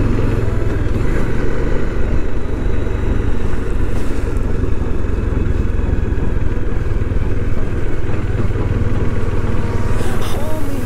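Motorcycle engine running steadily at cruising speed on an open road, with wind rushing over the microphone.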